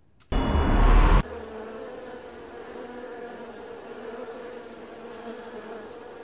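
Opening sound design of a music video's cinematic intro: a loud low boom lasting under a second, followed by a steady drone of a few held tones.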